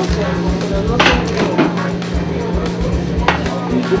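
Background music with a beat, with two sharp clicks, one about a second in and another a little past three seconds.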